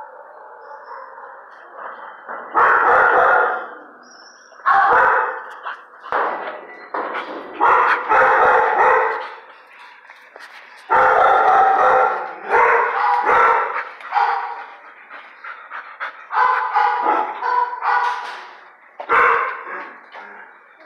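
Dog barking in a tiled kennel with metal gates: loud bouts of barking every second or two, with short pauses between them.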